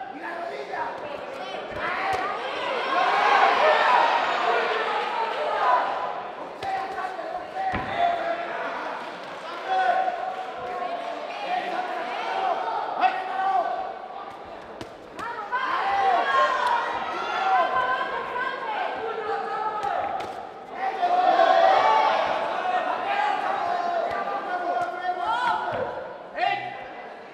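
Loud shouting voices at ringside during a kickboxing bout, swelling twice, with sharp thuds of gloved punches landing now and then.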